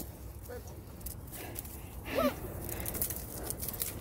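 Quiet outdoor background with a steady low rumble and scattered faint rustles and clicks, as of dry reed stems brushing against a handheld camera. A brief faint voice comes about two seconds in.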